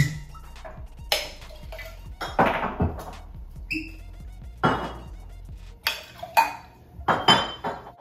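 Glassware and bottles clinking and knocking on a countertop as a drink is mixed: several separate knocks and clinks, one with a short ring, over background music that drops away about six seconds in.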